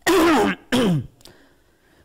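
A man clearing his throat: two short voice sounds, each falling in pitch, about half a second apart.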